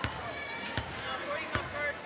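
A basketball bounced three times on a hardwood court, about three-quarters of a second apart: a player's dribbling routine at the free-throw line. Faint voices carry in the arena behind it.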